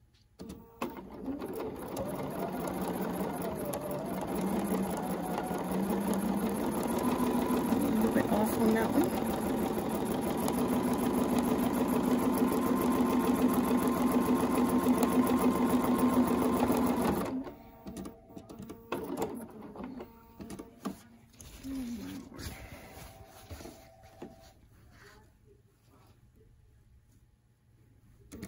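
Bernina domestic sewing machine stitching steadily during free-motion ruler quilting, its motor pitch rising a little a few seconds in, then stopping abruptly about two-thirds of the way through. Scattered small clicks and knocks follow as the template and quilt are handled.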